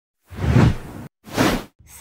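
Two whoosh sound effects of a news channel's logo intro. The first is longer and louder, about a second of rising and falling noise. The second is shorter and follows right after a brief gap.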